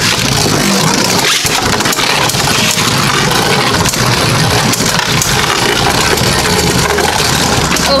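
Two Beyblade Burst tops, Hercules H4 and Salamander S4, spinning in a plastic Rail Rush BeyStadium: a loud, continuous whirring and scraping as their tips grind across the floor and the tops knock about the bowl.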